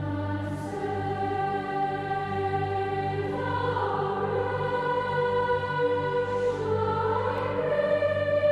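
Children's choir singing a slow melody in long held notes over a steady low accompaniment, growing gradually louder.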